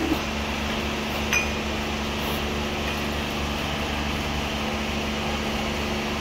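A steady machine hum carrying a low, even tone, with one light metallic clink about one and a half seconds in.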